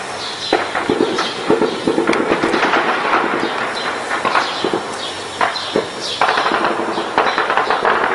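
Heavy gunfire: many shots in rapid, overlapping bursts with barely a pause.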